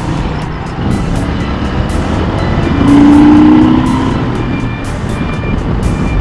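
Motorcycle engine running under wind noise on a helmet-mounted microphone while riding. About three seconds in, a steady droning tone swells for about a second and is the loudest part.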